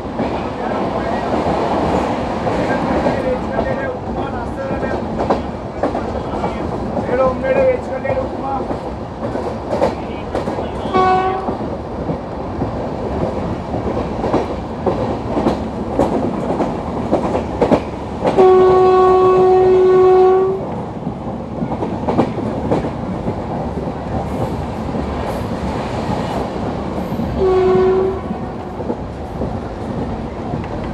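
Indian Railways LHB passenger coaches running at speed, the wheels clattering over the rail joints, heard from an open coach window. The WAP-4 electric locomotive's horn sounds ahead three times: a short blast about eleven seconds in, a long blast of about two seconds near the middle, and another short blast near the end.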